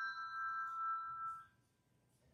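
A struck chime ringing, several clear high tones sounding together as a chord, then stopping abruptly about a second and a half in.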